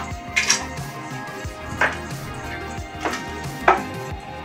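A few sharp, irregularly spaced knocks and clatters of hard objects being handled on a desk, over steady background music.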